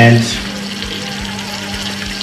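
Egg and spinach frying in a pan, a steady sizzle over a constant low hum.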